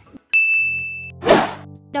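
Logo-sting sound effect: a bright ding that rings steadily for just under a second over low sustained notes, then a short, loud swoosh about a second and a half in.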